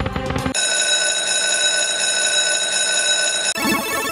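Book of Ra Deluxe 10 online slot game sound: a moment of game music, then a steady electronic ringing tone held for about three seconds while the reels spin, broken near the end by a short rattling sound effect as the reels stop.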